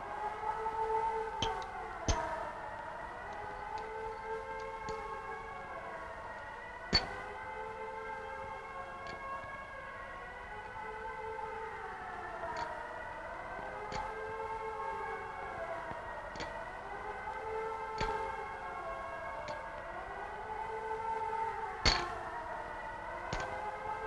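Siren-like wail of several layered tones, rising and falling in pitch about every two seconds. Sharp clicks and ticks come at irregular moments, the loudest about seven seconds in and near the end.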